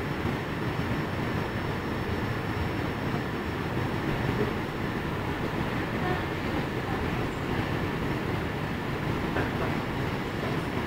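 Steady, even low background noise of a rapid-transit station, with a faint steady high-pitched whine over it.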